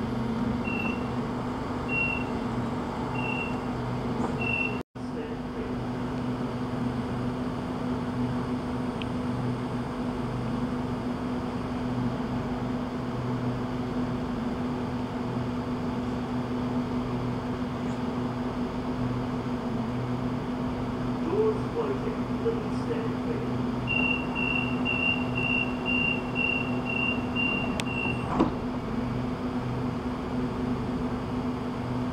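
Sydney Trains Waratah electric train standing at the platform with a steady hum from its onboard equipment. A few evenly spaced high beeps sound early on. Near the end comes a quick run of about nine high beeps, the door-closing warning, before the doors shut.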